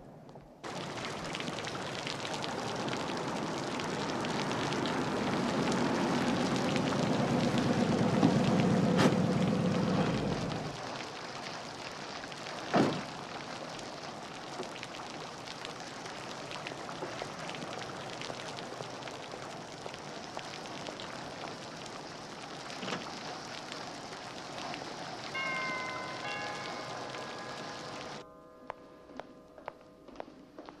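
Fountain water splashing steadily. Under it a car engine rumbles, growing louder and then cutting off about ten seconds in, and a single sharp knock follows a couple of seconds later, like a car door shutting. Near the end a few stepped chime notes ring.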